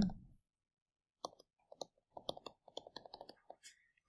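Faint, irregular clicks and taps of a stylus on a tablet screen while handwriting, starting about a second in.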